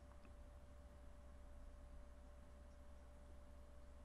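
Near silence: a faint steady hum with one thin steady tone.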